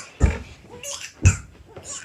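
A child laughing in short, snorting bursts, three times about a second apart.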